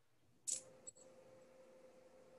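Faint video-call audio: about half a second in comes a short high hiss and a click, then a faint steady hum over low background noise.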